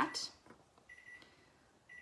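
Near quiet with a faint, high, steady electronic tone that sounds for about half a second at a time, twice.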